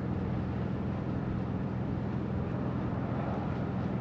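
A steady, low mechanical hum over even outdoor background noise.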